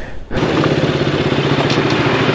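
Motorcycle engine running steadily at low revs with an even, pulsing beat, starting about a third of a second in.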